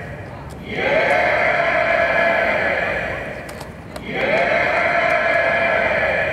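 Two long electronic tones from the performance's sound design, each gliding up at its start and then held for a couple of seconds. The first comes just under a second in and the second about four seconds in.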